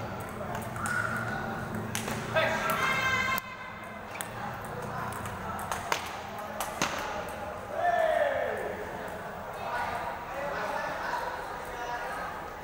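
Table tennis ball clicking sharply off paddles and table a few times at irregular spacing, with voices of players and onlookers echoing in a large hall, including one falling call about eight seconds in.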